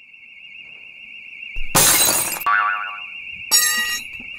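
Electronic burglar alarm sounding a warbling high tone that grows louder, with a loud crash of shattering glass about two seconds in and a second, shorter smash near the end.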